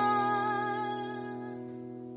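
A woman's held final sung note over an acoustic guitar's last strummed chord. The voice stops about a second in while the chord rings on, fading steadily away: the end of the song.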